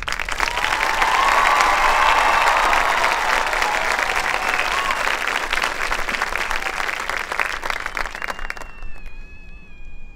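Audience applauding and cheering for a marching band, loud at first and dying away about nine seconds in. A thin, held high tone sounds near the end.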